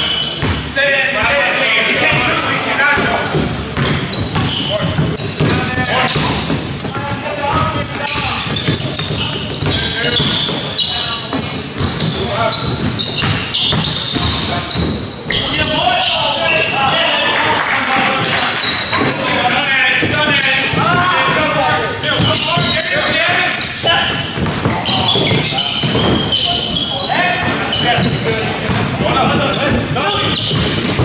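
Basketball game in a gym: the ball bouncing on the hardwood court amid indistinct voices of players and spectators, echoing in the large hall.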